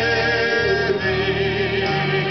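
Gospel quartet of mixed men's and women's voices singing in harmony, holding sustained notes with vibrato, over a keyboard accompaniment.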